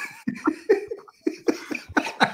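Several men laughing hard in short bursts, with a brief pause just after the middle.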